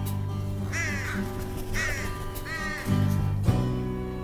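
Crow cawing three times, a short harsh call about a second apart, over low sustained lullaby music; a new chord comes in near the end.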